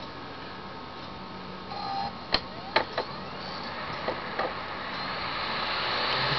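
Laptop CD drive spinning up and seeking as it starts to read a bootable Ubuntu CD: a few sharp clicks and a short tone, under a whir that slowly grows louder.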